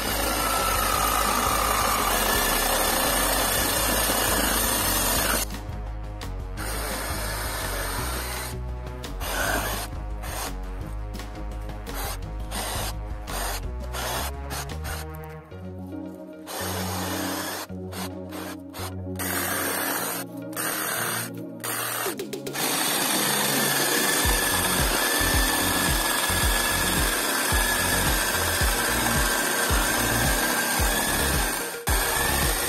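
Cordless reciprocating saw cutting through tree branches, its blade sawing into the wood. It runs steadily for the first few seconds, starts and stops through the middle, and runs steadily again for the last several seconds, over background music.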